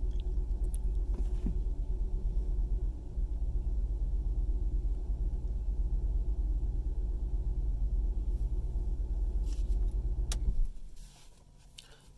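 Car engine idling, heard from inside the cabin as a steady low hum, which cuts off suddenly near the end with a few faint clicks just before.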